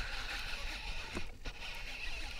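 Steady, fairly quiet outdoor background noise of wind and water around a small boat on open water, with two faint clicks a little over a second in.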